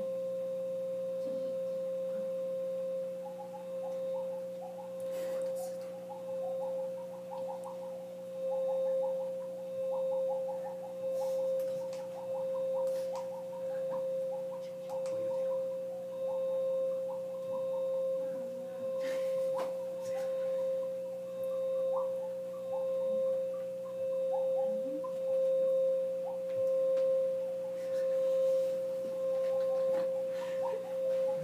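A steady, pure electronic drone held throughout, with a weaker lower hum beneath it. From a few seconds in, its loudness swells and fades about every second and a half, with faint chirping blips above it.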